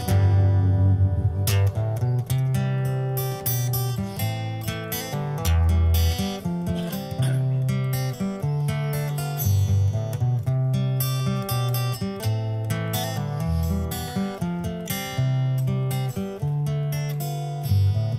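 Acoustic guitar played solo as an instrumental passage of a song: steady strummed chords with the bass notes changing every second or two.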